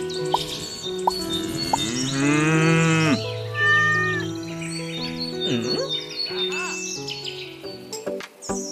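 A cow moos once, a long call that rises and falls for about a second, starting about two seconds in, over light background music. A few short bird chirps follow.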